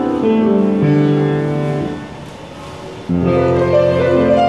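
Slow instrumental piano music with held notes. The notes fade away about two seconds in, and a new chord comes in sharply about a second later.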